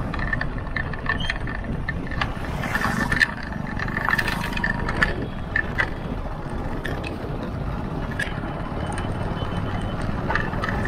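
Ride noise of a vehicle travelling over a wet, rough road: a steady low rumble with scattered rattles and clicks, and a faint high whine during the first three seconds.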